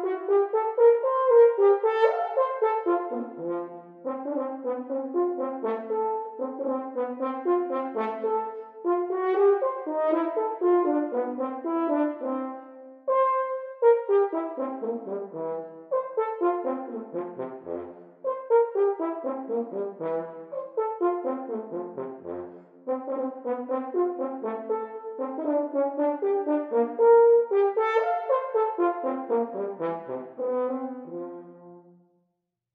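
Unaccompanied French horn playing a fast étude passage of quick detached notes in triplet figures, in phrases split by short breath pauses. Several runs fall in pitch.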